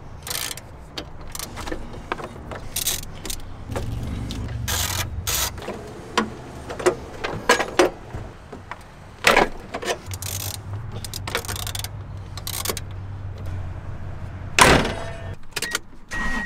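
Hand tools clinking and knocking on a pickup truck's battery hold-down and terminals as the battery is unbolted and lifted out: scattered short metal clicks and knocks, with one louder knock near the end.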